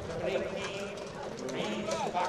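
Hoofbeats of a harness horse trotting past on a dirt track, pulling a sulky.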